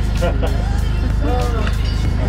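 People laughing and talking over background music with a steady low pulse.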